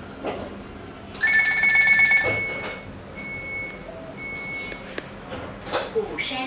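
Light rail tram's electronic door chime: a steady two-note tone held for about a second, then two shorter beeps, with a knock near the start and another near the end.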